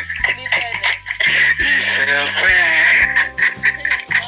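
Loud, high-pitched laughter that runs almost without a break for about three seconds, over background music with a steady low bass line.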